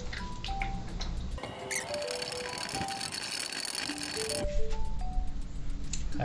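Background music, a simple melody of single notes, over eggs frying in hot oil in a wok as they are broken up and stirred. A dense sizzling hiss is loudest for about three seconds in the middle.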